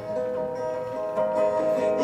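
Live acoustic guitar playing held, ringing chords.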